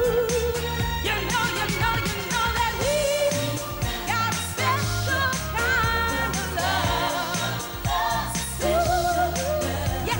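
A woman singing a pop song over a backing track of bass and drums, her voice wavering with vibrato on long held notes.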